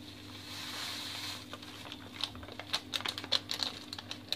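Foil sachet rustling as jelly premix powder is tipped into a steel bowl of hot water, followed from about halfway by a spoon stirring and clinking against the steel bowl in quick, irregular clicks.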